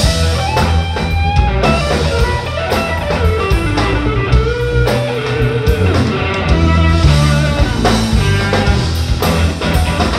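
Live blues-rock band playing: an electric guitar plays lead lines, with notes that slide and step in pitch, over bass guitar and a drum kit.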